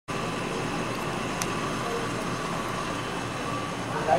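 Steady background room noise with a faint constant hum and a single faint click about one and a half seconds in.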